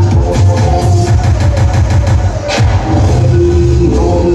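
Loud electronic dance music with a heavy bass beat, played over PA loudspeakers, with a sharp hit about two and a half seconds in.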